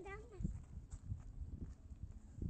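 A young child's short vocal sound, pitched and falling, right at the start, then low scuffing from footsteps on dry dirt with some rumble.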